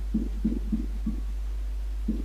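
Marker pen writing on a whiteboard: about four short, dull strokes in quick succession in the first second or so, over a steady low electrical hum.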